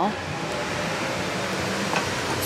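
A steady, even rushing noise with no breaks, with faint background music under it.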